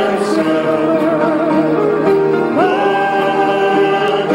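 Voices singing a gospel worship song, holding long notes with vibrato; a new note is taken up and held from about two and a half seconds in.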